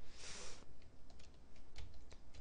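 Quick, irregular light clicks of typing on a computer keyboard, starting about a second in, after a short breathy burst of air near the start.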